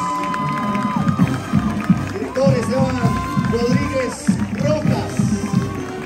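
A marching band playing a tune with a steady beat and long held notes, with crowd voices and shouts over it.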